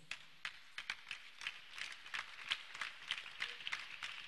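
A run of faint, irregular taps or knocks, several a second, over a quiet hiss.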